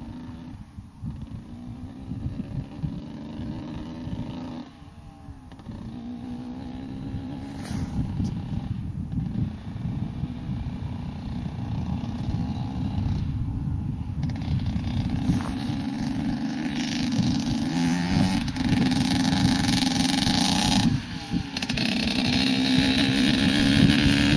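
Two-stroke single-cylinder engine of a Honda CR125 motocross bike running hard across a field. The revs rise and break off in short throttle lifts every few seconds, and it grows steadily louder as the bike approaches.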